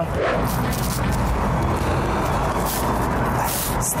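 Steady road traffic noise from a busy multi-lane street, cars and trucks passing.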